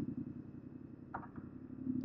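Yamaha MT-07 parallel-twin engine idling steadily and quietly, held in first gear with the clutch lever pulled in.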